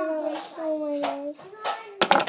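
A child's voice making drawn-out, wordless vocal sounds for about the first second, then quieter, with light handling noise.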